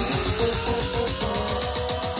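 Electronic dance music played through a Q Acoustics 1030 floor-standing speaker: a fast, steady beat of deep kick-drum hits, about four a second, under crisp hi-hats and held synth notes.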